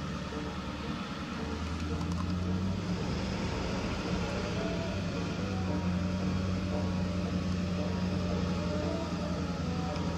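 Car engine running steadily while driving, heard from inside the cabin as a low drone.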